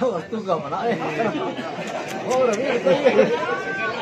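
Speech only: several voices talking at once in casual conversation.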